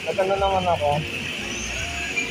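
A person's voice briefly, about the first second, over steady background noise of traffic and people.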